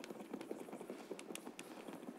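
Faint, irregular small taps and knocks, many to the second, over a low room hiss.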